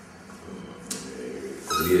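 A pause in a man's speech: faint room noise with a single short click about a second in, then his voice resumes near the end.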